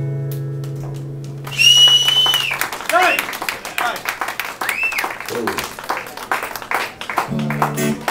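The last chord of an acoustic guitar rings and slowly fades, then the audience claps and whistles, several whistles rising and falling. A short guitar strum comes near the end.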